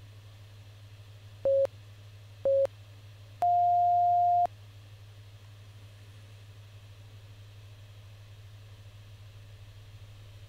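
Electronic interval-timer beeps: two short beeps a second apart, then one longer, higher beep, counting down the end of one exercise interval and signalling the start of the next. A steady low hum runs underneath.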